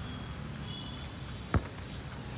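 Steady low outdoor background rumble with one sharp knock about one and a half seconds in.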